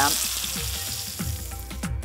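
Rack of lamb searing in hot olive oil in a frying pan, sizzling steadily as it is turned to seal the sides. The sizzle eases a little and cuts off abruptly just before the end.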